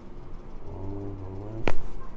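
A chiropractic neck adjustment: a man's low drawn-out hum, then a single sharp crack of the neck joints near the end.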